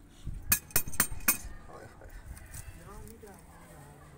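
Iron tongs clinking against burning charcoal and a clay bowl as live coals are picked up to load a hookah chillum: four sharp clicks in quick succession in the first second and a half.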